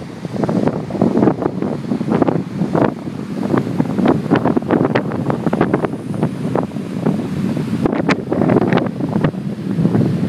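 Strong storm wind buffeting the microphone in irregular gusts, with surf washing on the shore underneath.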